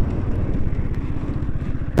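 KTM Duke 250's single-cylinder engine running at low revs with a fast, even pulsing as the motorcycle slows and pulls onto the road shoulder, heard from the rider's helmet mic. A short click comes right at the end.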